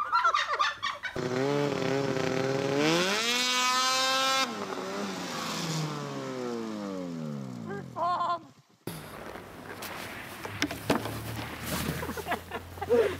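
Snowmobile engine revving up, its pitch climbing for about two seconds and holding, then winding steadily back down over about three seconds.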